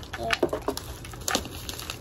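Bubble wrap and a plastic tumbler being handled: a few scattered light crinkles and clicks, with a brief murmur of voice.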